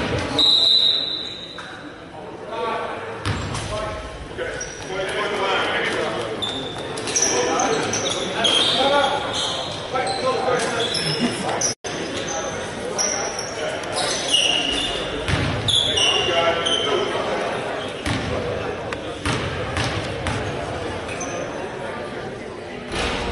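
A basketball bouncing on a hardwood gym floor, with players and bench chatting in an echoing gymnasium.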